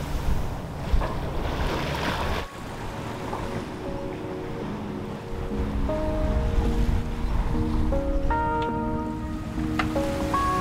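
Water rushing and splashing along a sailboat's hull, with wind on the microphone, cutting off suddenly about two and a half seconds in. Then gentle background music of long held notes builds over a low rumble.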